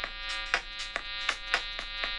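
Electronic music from the OscilloScoop iPad app: a sustained buzzy synth note over a steady beat of short ticks, about three to four a second, with a stronger hit about once a second.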